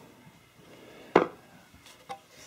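A single sharp knock about a second in, from handling the press-forming die and hammer form on the workbench; otherwise low workshop background.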